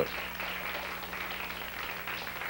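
Soft, steady applause from a small audience, over a low steady electrical hum.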